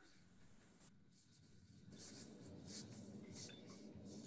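Near silence: faint room tone, with faint scratchy rustling coming in about halfway through.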